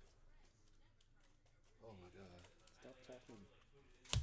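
Near silence with a faint voice in the background through the second half.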